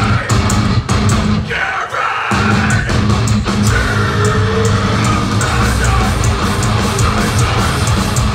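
Live metalcore band playing: heavy distorted guitars and bass with drums and cymbals. The low end cuts out briefly about two seconds in, then the band comes back in.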